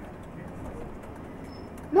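Steady low rumble of engine and road noise inside a moving tour coach's cabin, with a faint voice in the background near the start.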